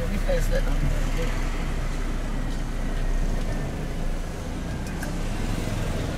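Steady low engine rumble and road noise inside the cabin of a vehicle driving slowly along a town street.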